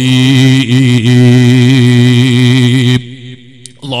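A man's voice chanting in a long held, slightly wavering melodic tone, breaking off about three seconds in.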